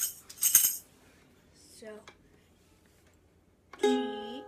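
A brief bright jingle of tambourine jingles in the first second. Near the end a single ukulele string is plucked and rings on, the note G.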